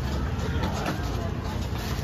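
Busy market background: a steady low rumble with indistinct voices, and a few faint clicks.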